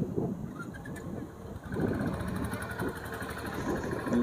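Suzuki scooter running along a winding road, its engine noise mixed with wind rumble on the handlebar-mounted microphone.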